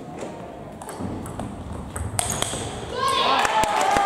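Table tennis ball clicking sharply off paddles and the table in a rally, a knock every half second or so, with more clicks near the end. In the last second a voice calls out loudly over the clicks.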